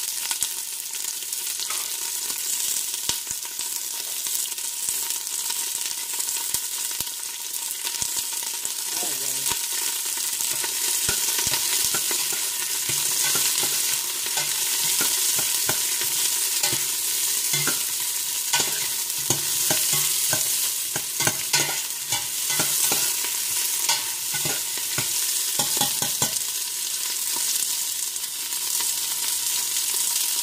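Garlic, onion and ginger sizzling in olive oil in a stainless steel pot, with a utensil scraping and tapping against the pot as it stirs. The stirring is busiest from about a third of the way in until shortly before the end.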